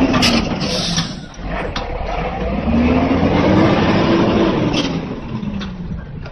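Heavy diesel truck engine revving up and easing off twice, the pitch climbing and then dropping each time, with a few short sharp knocks.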